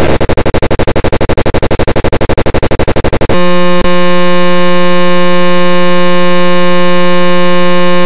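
Very loud, heavily distorted and clipped edited audio: a rapid stuttering loop repeating about ten times a second for about three seconds, then a steady buzzing tone that holds to the end, broken once by a brief dropout.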